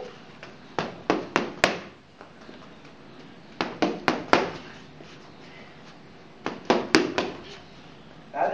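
Boxing gloves smacking focus mitts in three quick combinations of about four punches each, a few seconds apart.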